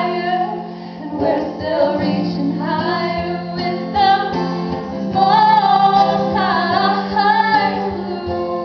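Female voices singing a blues number live, accompanied by two strummed acoustic guitars.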